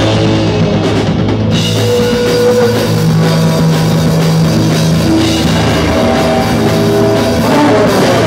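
Live punk rock band playing loud and steady without vocals: drum kit and electric guitar.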